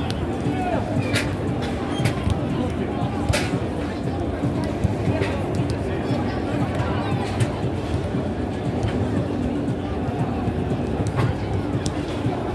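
Stadium crowd babble with spectators talking nearby, broken by a few sharp knocks of footballs being kicked.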